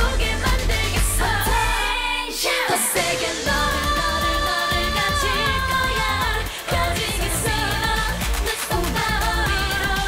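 Korean dance-pop song performed live: female vocalists singing over a backing track with a heavy bass beat. About two seconds in the bass and beat drop out briefly, then come back in.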